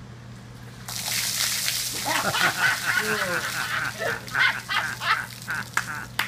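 A bucket of ice water dumped over a man's head about a second in: a sudden splash of water and ice, followed by his repeated gasping cries at the cold.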